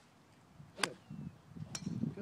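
Two sharp clicks about a second apart, of golf clubs striking balls, with a man's voice saying "good."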